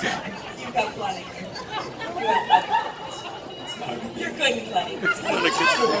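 Speech and background chatter: performers talking over a microphone amid crowd voices, with one long voice swooping up and down in pitch near the end.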